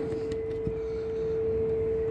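A steady hum at one constant pitch, with a faint click about two-thirds of a second in as a plastic bung is pressed into an external shower socket.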